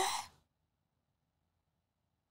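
A voice trails off in a breathy fade within the first moment, then dead silence.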